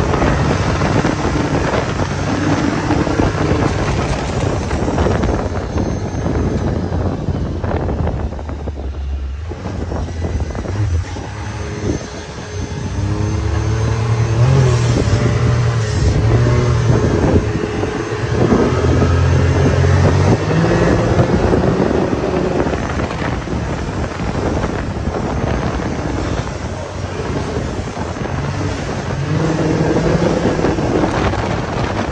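Can-Am Maverick 1000 side-by-side's V-twin engine running as it is driven over sand dunes, heard from inside the open cab with wind buffeting the microphone. The engine eases off for a few seconds about a third of the way in, then pulls harder again.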